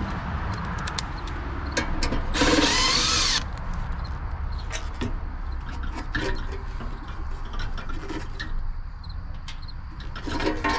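Milwaukee M12 cordless driver running for about a second, driving or backing out a screw on a sheet-metal electrical box. Scattered light clicks and knocks follow as the metal box cover is handled.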